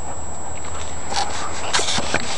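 Golden retriever nosing through dry leaf litter: a few short rustling, sniffing noises, the loudest near the end.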